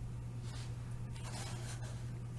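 Room tone through a webinar microphone: a low steady hum under faint hiss, with soft rustles about half a second and a second and a half in.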